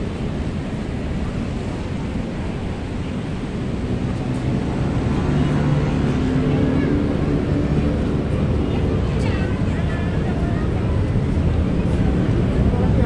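Steady low rumble of road traffic, with wind buffeting the microphone and scattered chatter of people; it grows a little louder about halfway through.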